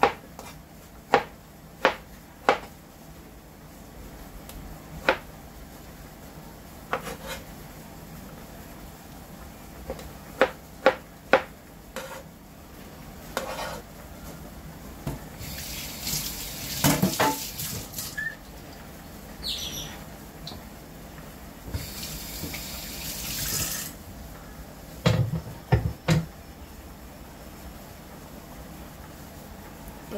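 Kitchen knife cutting tomatoes on a cutting board: about a dozen sharp knocks spread over the first twelve seconds. Then a tap runs for two or three seconds, twice, and a few heavier knocks come near the end.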